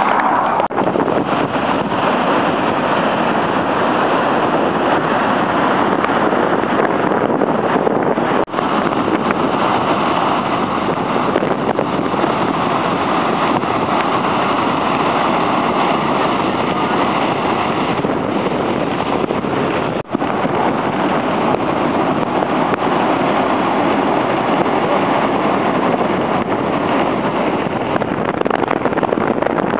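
Steady rush of the Niagara River rapids and the American Falls, with wind buffeting the microphone. The sound drops out briefly twice, about eight and twenty seconds in.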